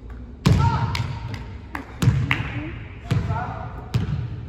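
Basketball striking hard on a hardwood gym floor, four loud thuds at uneven spacing, each ringing out in the echo of the large hall.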